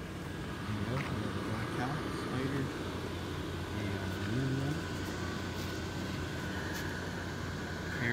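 Steady hum of the electric blower fans that keep inflatable Halloween yard decorations inflated, with a thin constant whine over a low drone. Faint voices come and go in the first half.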